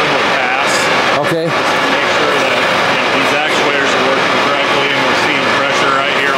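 John Deere tractor's diesel engine running steadily and loud, driving the planter's hydraulics for an accumulator charge test, with voices faintly over it.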